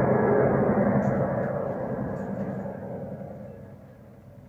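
A low, dense rumbling roar that fades out steadily.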